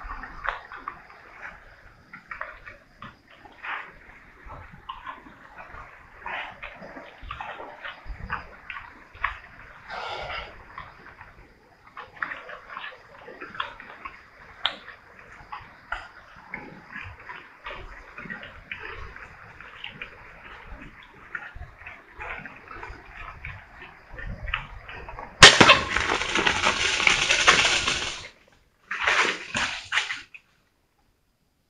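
Feral pigs feeding close by: a steady run of wet, irregular chewing, crunching and smacking as they root at the ground. About 25 seconds in, a sudden sharp onset leads into about three seconds of loud rushing noise, the loudest sound here, and a second short burst follows near the end.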